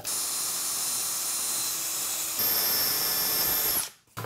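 Cordless drill running a twist bit into an MDF trammel arm with a steady whine. About two and a half seconds in, its pitch steps up and it gets a little louder, and it stops abruptly just before the end.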